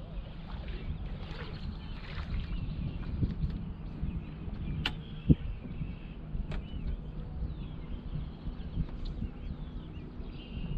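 Wind on the microphone and small waves lapping at a fishing boat's hull, with birds chirping now and then. About halfway through there are two sharp clicks and a single thump, the loudest sound.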